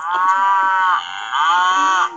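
Cartoon cow mooing sound effect from an animated story app: two long moos, the second starting a little past halfway.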